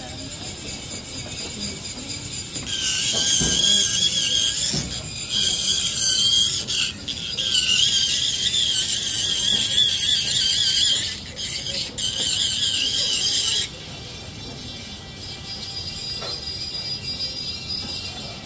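Dental lab micromotor handpiece with an acrylic trimming bur grinding away the border of a lower acrylic special tray: a loud, high, wavering whine that starts about three seconds in, breaks off briefly twice, and stops about fourteen seconds in.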